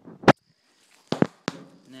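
Three sharp knocks from handling a wire-mesh cage trap. The loudest comes just after the start, and two more follow about a second later, a third of a second apart.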